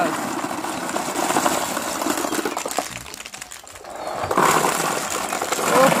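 Ping pong balls pouring from a basin into a plastic tub and bouncing onto the mat, a dense rattle of light plastic clicks that eases around the middle and picks up again near the end.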